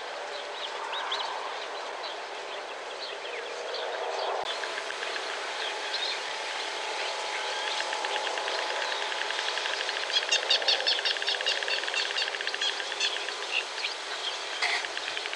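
Birds calling: many short, high chirps scattered throughout, with a fast, even rattling trill of rapid notes near the end that is the loudest part.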